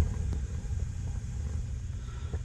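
Propane gas-log fireplace burner running with a low, steady rumble while its flame is turned down at the control valve.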